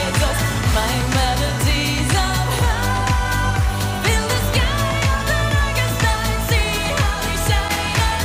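Up-tempo pop song played live, with a steady drum beat under a woman's wordless sung melody.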